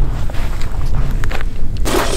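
Wind rumbling on the microphone outdoors, with a few faint crunches. Near the end it changes abruptly to a brighter hiss.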